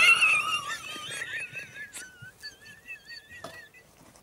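A man's voice breaking into a long, thin, high-pitched squeak that wavers up and down like a whistle, loudest at first and fading out near the end. It is the damaged voice left by a botched tonsil operation.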